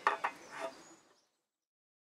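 Two quick knocks in succession, then a fainter third sound; the audio cuts to silence just over a second in.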